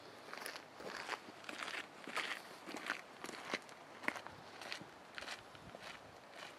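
Footsteps on a forest trail, an uneven series of steps at about two a second.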